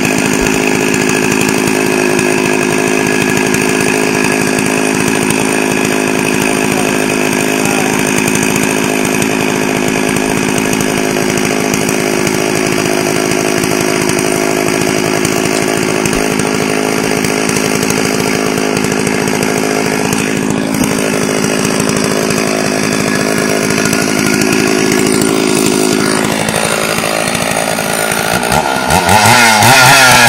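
Stihl chainsaw running at a steady high speed, as in a long rip cut along a log to saw out boards. Near the end its pitch sags and then it revs up and down several times.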